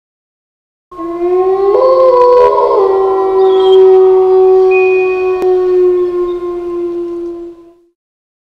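A loud, long held chord of steady tones. It starts about a second in, steps in pitch twice over the next two seconds, then holds level and cuts off shortly before the end.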